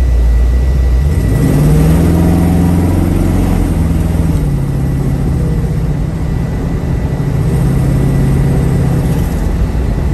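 A 1967 Camaro's 350 V8 with dual exhaust running on the road, heard from inside the car with road noise. The engine note climbs about a second in and holds, eases off at about four seconds, then climbs again near eight seconds before settling back.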